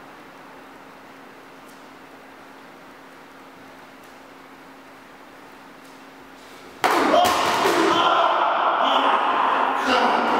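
Quiet room tone with a faint steady hum, then about seven seconds in a sudden loud outburst of raised voices and thuds from a staged fight scuffle.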